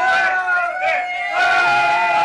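A group of voices singing together around a candle-lit cake, with long drawn-out held notes over a babble of other voices.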